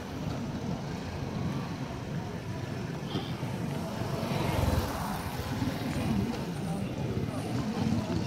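Motorcycle engine running over a steady low street rumble of passing traffic, the rumble swelling briefly about halfway through.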